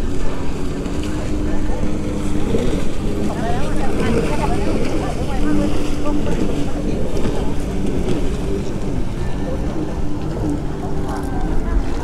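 Steady low rumble of a boat's motor and wind over open sea water, with people's voices talking indistinctly in the background.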